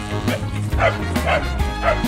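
A dog barking three times, about half a second apart, starting a little under a second in, over steady background music.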